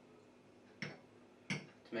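Two short, sharp clicks a little under a second apart, from a small metal measure knocking against a glass of ice while cranberry juice is poured.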